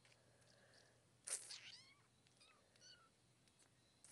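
A brief high call about a second in, falling in pitch, then a few faint short chirps, against near silence.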